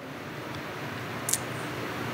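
Steady background hum and hiss of the venue's room tone during a pause in speech, with one brief soft hiss a little past halfway.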